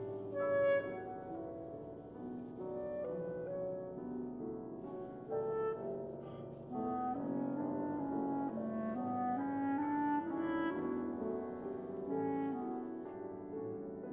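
Clarinet and grand piano playing a classical chamber duo: a line of held clarinet notes moving from pitch to pitch over piano chords, with a few louder accented notes.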